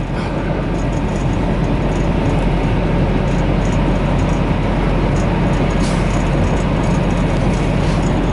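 Steady drone of a semi truck's engine and road noise heard inside the cab while cruising at highway speed.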